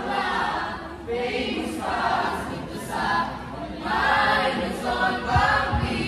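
A group of voices singing a chant together in short phrases about a second apart, with a couple of low thumps about five and a half seconds in.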